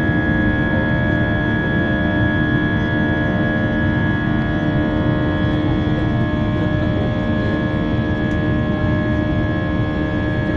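Airbus A320-232's IAE V2500 turbofan engines at climb power after take-off, heard inside the passenger cabin: a steady rumble with several steady droning tones over it.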